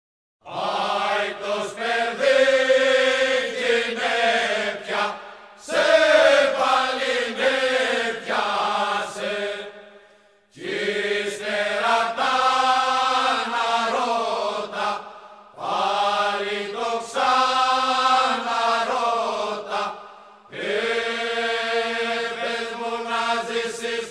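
Unaccompanied men's choir singing a Cretan rizitiko song in slow, drawn-out, melismatic phrases, pausing briefly for breath about every five seconds.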